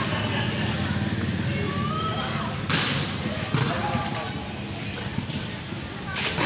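A volleyball being struck by hand during a rally: two sharp smacks less than a second apart near the middle, over a steady murmur of voices from the court and onlookers.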